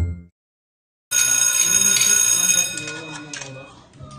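Music cuts off just after the start, followed by under a second of dead silence; then people's voices come in under a steady, high-pitched ringing tone that lasts about a second and a half before fading.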